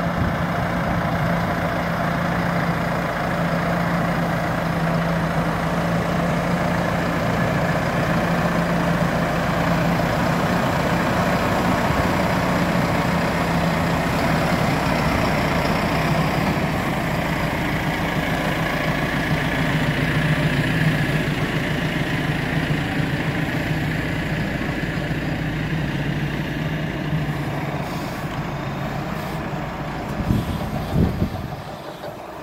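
Farm tractor's diesel engine running steadily close by, a constant low hum with a rushing mechanical noise over it, dropping slightly in pitch and level near the end.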